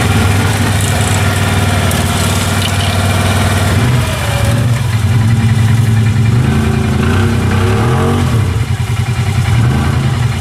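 ATV engines running: a steady engine note close by, with the stuck Can-Am Renegade revving as its tyres spin in deep mud. The pitch dips about four seconds in and climbs again near eight seconds.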